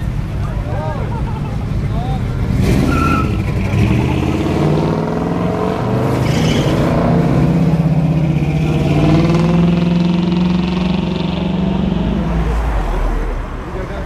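Chevrolet muscle cars, a Chevelle and then a first-generation Camaro, driving out past the camera under throttle. The engine note builds a few seconds in, holds steady and strong, then drops away near the end. Two short sharp bursts come about three and six seconds in.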